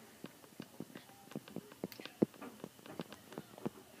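Faint, irregular light clicks of a stylus tapping and writing on a tablet screen, with one louder knock a little after two seconds in.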